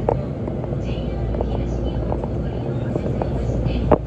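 Steady low rumble heard from inside a standing train car as the adjacent E657 series limited express pulls out alongside, with two sharp knocks, one right at the start and one just before the end.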